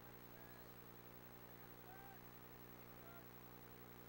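Near silence: a steady low electrical hum, with a few faint, short bird chirps scattered through it.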